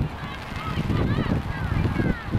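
Birds calling: many short, high, arching calls, one after another, over a low rumble that grows louder about halfway through.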